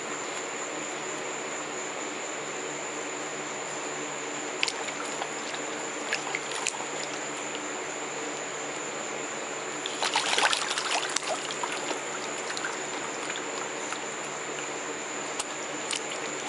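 A white domestic duck dabbling its bill in the water of a tub, making small splashes now and then and a louder burst of splashing about ten seconds in, over a steady background hiss.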